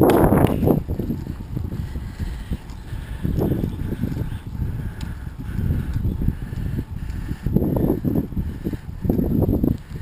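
Wind buffeting the microphone of a camera moving along the road: a low, irregular rumble that swells and fades.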